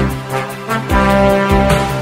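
Background music with sustained notes over a bass line, the notes changing about once a second.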